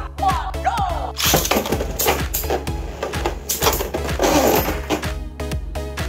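Background music with a steady beat over Beyblade spinning tops clashing and scraping against each other in a plastic stadium, with sharp cracking hits; the clatter eases off near the end.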